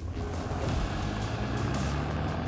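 A low, steady mechanical rumble under background music.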